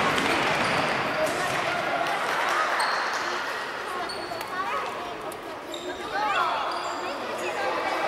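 Futsal players' shoes squeaking on a wooden sports-hall floor, with a cluster of short squeaks about four to six seconds in, and the ball being struck. Voices call out, all echoing in the large hall.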